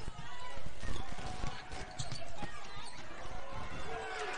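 Game sound from a basketball court in an arena: a basketball bouncing and knocking on the hardwood floor amid the chatter of crowd voices.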